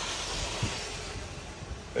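Wind noise: a steady rushing hiss with an uneven low rumble, slowly fading.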